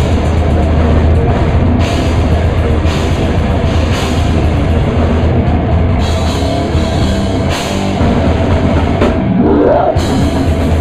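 Death metal band playing live at full volume: heavily distorted electric guitars and bass over a drum kit, with a rising slide in pitch near the end.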